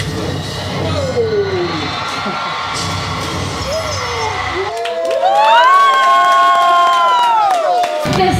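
A roomful of young people cheering, shouting and screaming together. About five seconds in, one high-pitched scream rises, is held for about three seconds and falls away, over hand clapping.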